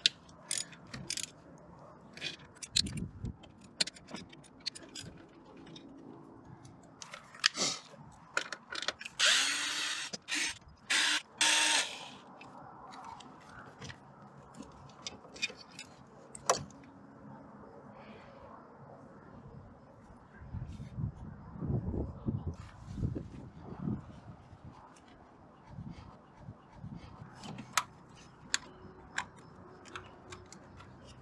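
Hand ratchet clicking on an 8 mm socket as the throttle body bolts are loosened, with scattered knocks and clatter of tools and metal parts; the densest, fastest run of clicking comes about nine to twelve seconds in.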